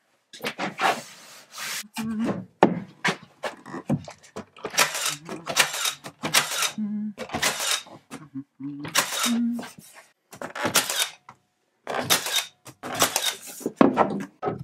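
Salvaged wooden boards being handled and fitted against a framed wall, giving irregular wood-on-wood scraping, rubbing and knocks, with a few short low creaks.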